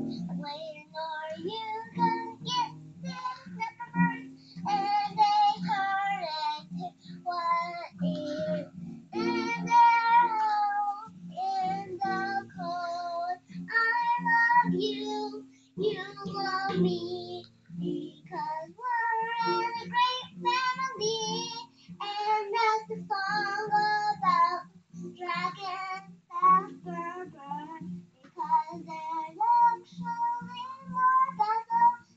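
A young girl singing in short phrases with a wavering voice, while strumming an acoustic guitar in a steady rhythm.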